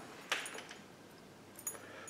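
A quiet pause with a couple of faint, brief handling clicks over low room tone.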